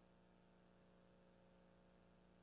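Near silence: a faint steady hum and hiss.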